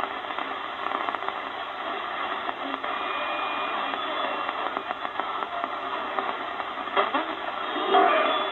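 Audio of a Chinese clone Malahit DSP SDR shortwave receiver tuned across the 49 m band between stations: steady static and hiss with faint snatches of signals, cut off above about 4 kHz, and a brief louder burst near the end. The receiver is being overloaded by the strong WWCR signal, with RF breakthrough and spurious signals even at zero RF gain.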